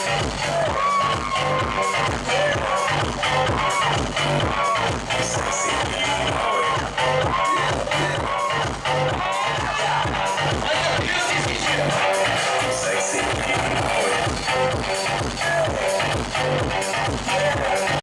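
Loud dance music over a sound system, with a steady thumping bass beat and a melody line riding above it.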